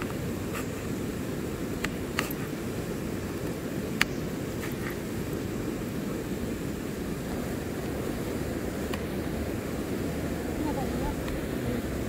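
Steady low rushing of a river, with a few light sharp clicks or taps now and then, the loudest about four seconds in.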